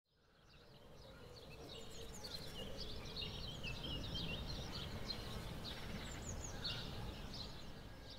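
Faint outdoor ambience: many short bird chirps scattered over a steady low background rumble, fading in over the first couple of seconds.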